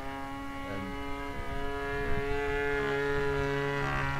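Engine of a large radio-controlled Beaver model aircraft running steadily in flight, a single droning note with many overtones; a lower steady tone joins about two-thirds of the way through.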